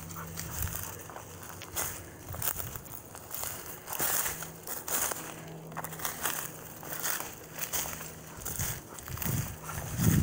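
Footsteps crunching irregularly through dry leaves and twigs on a forest floor.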